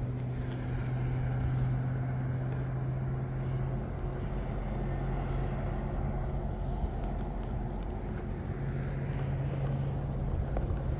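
Road traffic passing, a line of cars and a van towing a trailer, with tyre and engine noise swelling and fading, over a steady low hum that eases off in the middle and returns near the end.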